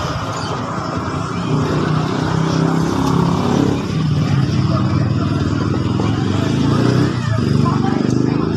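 Small scooter engine running steadily with a fast, even pulse and a couple of brief dips in level, while its carburetor is adjusted with a screwdriver during a tune-up.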